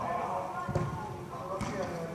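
Voices and chatter echoing in a large indoor sports hall, with two short thuds under them, a little under a second apart.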